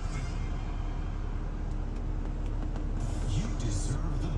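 Steady low hum and rumble inside a car's cabin.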